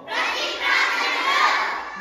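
Many girls' and women's voices praying aloud at once, overlapping into a loud, continuous babble of prayer.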